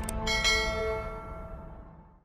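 Two quick clicks, then a bright bell chime strikes about a quarter second in and rings out, fading away over low sustained outro music.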